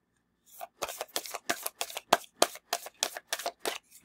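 A deck of new, stiff oracle cards being shuffled by hand: a quick, even run of crisp card snaps, about six a second, starting about half a second in.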